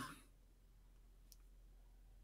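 Near silence: room tone, with a single faint click a little past a second in.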